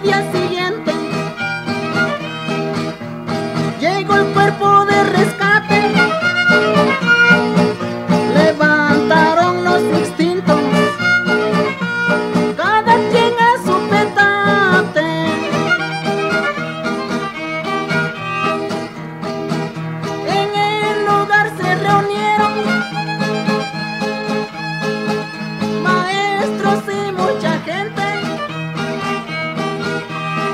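An instrumental passage of regional Mexican string-band music: a violin plays a sliding melody over a steady strummed guitar accompaniment, with no singing.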